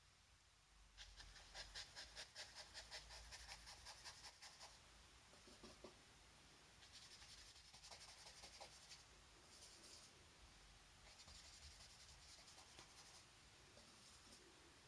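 Faint scratchy scrubbing of a synthetic brush working paint into textured watercolour paper (scumbling): quick back-and-forth strokes about five a second, in several bursts with short pauses between.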